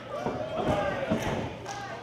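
A few dull thuds on the wrestling ring's canvas as the wrestlers move on the mat, with faint voices from the crowd in the hall.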